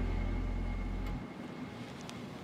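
Tail of a dark background music cue: a low held drone with sustained tones above it, cutting off abruptly about a second in, leaving only faint outdoor background noise.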